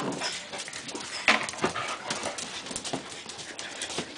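A dachshund dragging a plastic box across a hard floor with its mouth: scattered light knocks and scrapes of the plastic on the floor.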